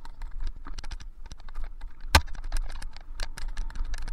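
Mountain bike and its mounted camera rattling and clicking over a bumpy dirt trail, in quick irregular ticks over a steady low rumble. One sharp knock stands out about two seconds in.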